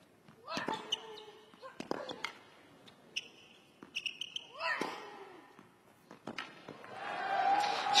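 Tennis rally on a hard court: a string of sharp racquet strikes on the ball about a second apart, several with a player's short grunt. Near the end the crowd breaks into cheering as the point is won.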